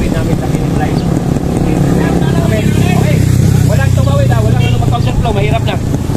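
Several people talking and calling out over a steady low rumble, at a bunched road-cycling race start.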